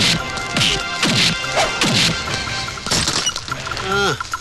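Dubbed movie fight sound effects: a rapid series of about five heavy punch hits, each with a falling swoosh, over background music.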